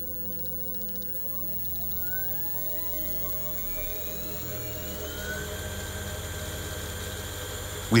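Car alternator converted into a brushless motor, run by an electronic brushless controller, spinning up as the speed knob is turned. A whine rises in pitch from about a second in, then settles into a steady high whine at the motor's maximum speed.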